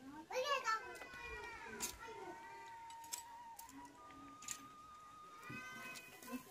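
A cat meowing: one long, drawn-out meow falling in pitch over the first two seconds or so, and a shorter meow near the end.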